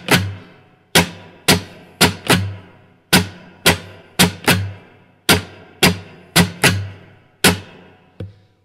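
Acoustic guitar strummed on one chord in a repeating strumming pattern: groups of four strums, the last two close together, then a longer gap, the group coming round about every two seconds. Each strum rings and fades before the next.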